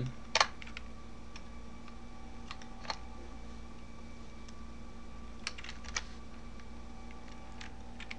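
A few separate keystrokes on a computer keyboard, the loudest about half a second in and a small cluster around the middle, over a steady faint electrical hum.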